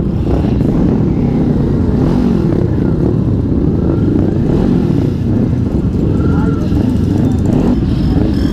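Motorcycle engines running at low speed as a group rolls off together, a steady low rumble heard through a helmet-mounted microphone, with muffled talk over it.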